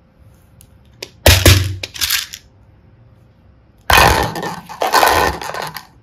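Hard plastic toy containers clattering into a clear plastic bowl in two loud rattling bursts, the first about a second in and the second past the middle.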